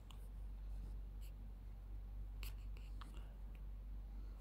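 Faint taps of a finger typing on a phone's touchscreen keyboard, a few short clicks over a low steady hum.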